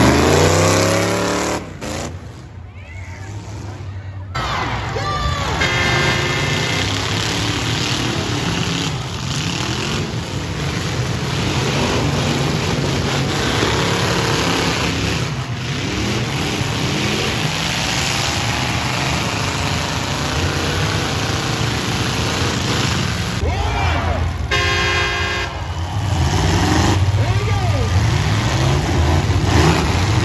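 Several demolition derby cars' engines revving and running hard together, rising and falling in pitch. Short steady horn-like tones sound three times, about 6, 15 and 25 seconds in.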